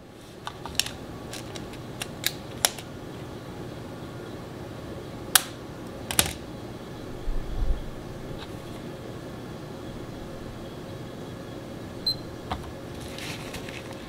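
Handling of a Keto-Mojo blood ketone meter and its test strip on a table: scattered light clicks and taps, loudest about six seconds in, with a low thud shortly after. A single short high electronic beep comes about twelve seconds in, over steady room hiss.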